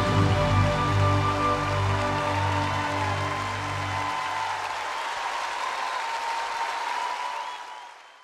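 The orchestra's final held chord ringing out over audience applause at the end of a live song. The low notes stop about halfway through, and the whole sound fades out near the end.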